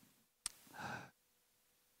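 Near silence through a handheld microphone, broken by a small mouth click about half a second in and then one short, soft breath just before the next words.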